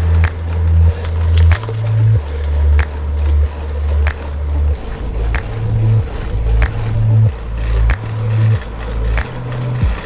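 Background music: a bass line stepping between low notes, with a sharp beat about every 1.3 seconds.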